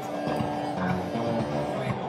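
Analogue Solutions Fusebox analogue monosynth playing a sequenced pattern from its Patternator: short notes stepping between a few pitches, several changes a second.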